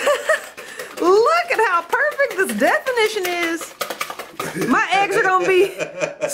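Wire whisk beating eggs in a ceramic bowl, a fast irregular clicking, under loud vocal exclamations that rise and fall in pitch.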